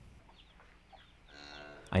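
Near silence, then about a second and a half in a short, steady-pitched chicken call, part of a farmyard sound bed.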